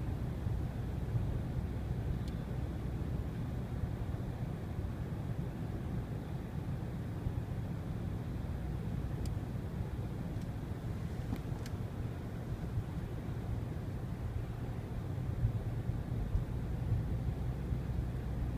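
Steady low rumble of a car driving at highway speed, engine and tyre noise heard from inside the cabin. A few faint clicks come near the middle.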